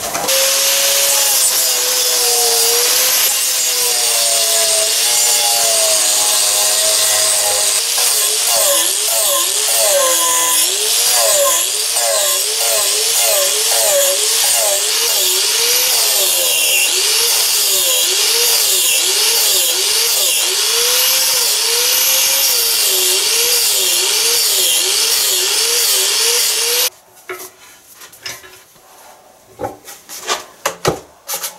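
Angle grinder with a carving disc cutting into wood, its motor pitch dipping and recovering about once a second as each pass loads it. It stops suddenly near the end, leaving quieter rubbing and handling sounds.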